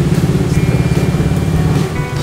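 A motor vehicle's engine idling with a fast, even pulse, dropping away near the end.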